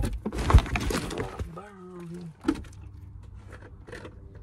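Phone handled and moved around inside a car: a quick run of loud knocks and rustles in the first second and a half. Then a voice holds one note for under a second, over a low steady hum.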